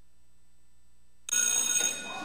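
A quiet gap, then a little over a second in an electric school bell suddenly starts ringing, loud and metallic with several steady high tones.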